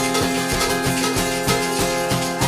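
Acoustic guitar strummed in a steady rhythm, about four strokes a second, in an instrumental break of a live song, with shakers from the audience joining in.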